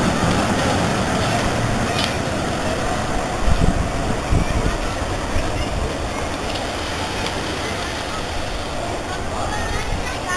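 Vintage wooden electric tram rumbling along the rails as it pulls away, slowly fading, with a few low knocks about three and a half to four and a half seconds in. Crowd chatter runs underneath.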